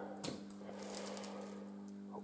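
Quiet room tone with a faint, steady electrical-sounding hum and a single light click about a quarter of a second in.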